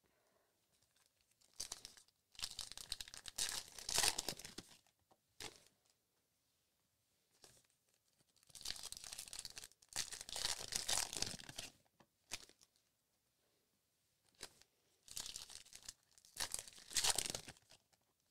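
Wrappers of Topps Allen & Ginter baseball card packs being torn open and crinkled in the hands, in three main stretches of rustling with short pauses between.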